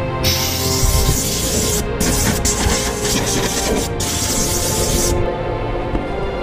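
A loud hissing rush of air as dust is cleaned out of the plywood cabinet box, dropping out briefly twice and stopping suddenly about five seconds in. Background music with steady held notes plays throughout.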